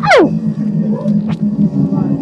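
A short, loud cry sliding steeply down in pitch at the start, then a steady low droning hum.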